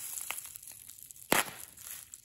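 Plastic bubble wrap crinkling as a folding knife's blade cuts and slices into it, with a few faint clicks and one short, sharp crack about a second and a half in.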